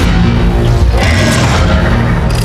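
Action-film soundtrack: loud dramatic music under a deep rumble, with several heavy crashes of smashing debris about halfway through.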